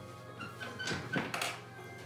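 A man sitting down in an office chair: a short run of rustles and thunks lasting about a second, over quiet background music.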